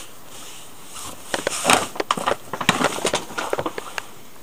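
Hands working over a clothed body during a massage: rustling cloth and a run of irregular sharp clicks and taps, starting about a second in.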